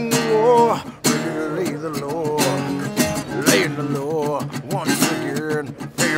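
Acoustic guitar strummed in a steady rhythm while a man sings over it, his voice wavering in pitch.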